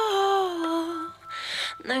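A woman singing a slow pop ballad: she holds one long note that slides down slightly and fades about a second in, draws an audible breath, and starts the next line just before the end.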